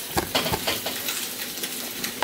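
Bacon and hot dogs frying in a griddle pan on an electric stove: a steady sizzle with scattered crackling pops.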